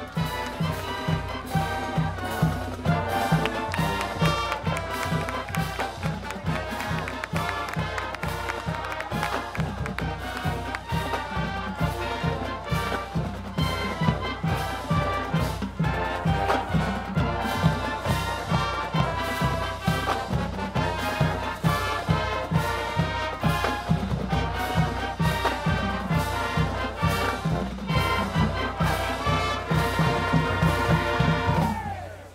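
Marching band playing a brass-led tune with trumpets and trombones over a steady drum beat.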